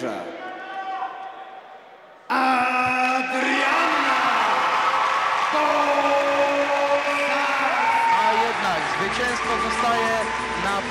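An announcer's voice fades into the hall's echo. About two seconds in, a sudden loud burst of crowd cheering and whooping breaks in and carries on as the winner is declared.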